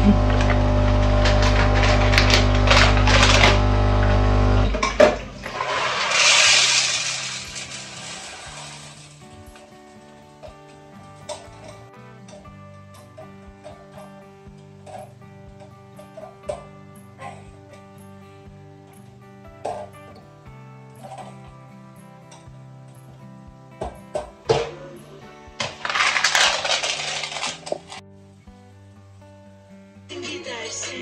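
Bean-to-cup espresso machine's grinder running loudly with a steady hum, then cutting off about five seconds in. Two bursts of hissing from the machine follow, one just after the grinder stops and one near the end, with a few clicks between, over background music.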